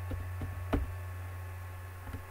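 A few keystrokes on a computer keyboard, three short clicks in the first second with the loudest in the middle, over a steady low electrical hum.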